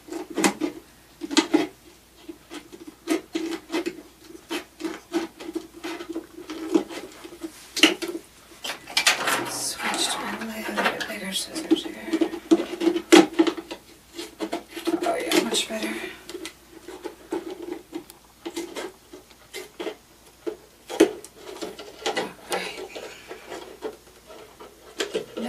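Small craft scissors snipping around a thin plastic soda bottle: a long run of irregular, crisp snips, with the plastic crackling as the bottle is turned in the hands.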